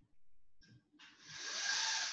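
Faint scratches of a dry-erase marker writing on a whiteboard, then a hiss that rises in from about a second in.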